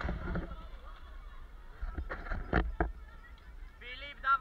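Low wind rumble on the microphone, with a cluster of sharp knocks about two seconds in and a short honk-like pitched call starting right at the end.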